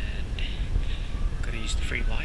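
Muffled rumbling handling noise from a GoPro sealed in its protective case on a selfie stick, carried while walking, with faint indistinct voice-like sounds above it.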